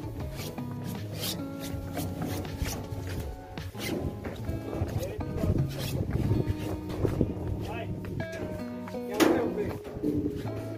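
Background music: held notes over a regular beat.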